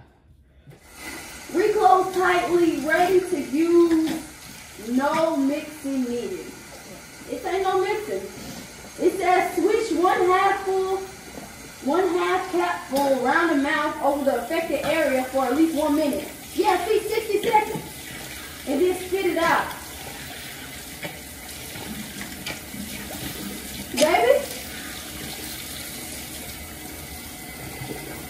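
Bathroom sink faucet running a steady stream into the basin. For much of the time a person's voice sounds over the water without forming clear words; near the end the running water is heard more on its own.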